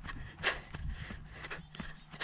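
A jogger's breathing and footfalls on a grass path while running, heard as a string of short, irregular noisy bursts.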